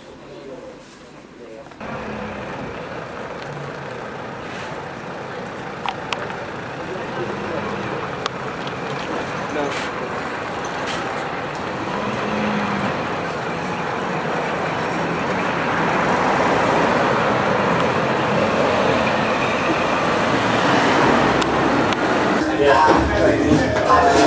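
Touring coach running outside, with road noise, growing steadily louder over about twenty seconds. Voices take over near the end.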